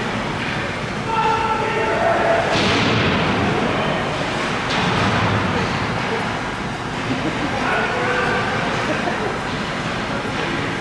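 Ice hockey game in play in an indoor rink: a steady wash of skating and play noise, with shouting voices about a second in and again near eight seconds. There is a short, louder rush of noise about two and a half seconds in.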